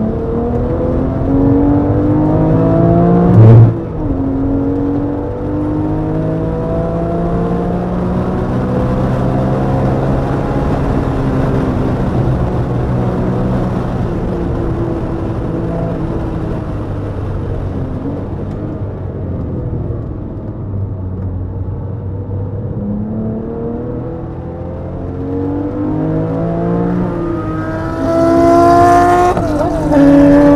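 Porsche GT3's flat-six engine heard onboard at speed, its pitch climbing through each gear and dropping at each upshift. A sudden loud thump comes about three and a half seconds in. The engine eases off and goes quieter past the middle, then pulls hard again near the end with a rush of wind.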